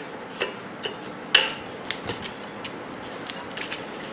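Scattered metallic clicks and taps as the sheet-steel housing of a microwave oven magnetron is pulled apart by hand, the loudest about a second and a half in.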